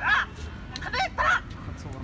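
A raised voice shouting protest slogans: two loud, high-pitched shouted phrases about a second apart, over a steady low rumble of street traffic.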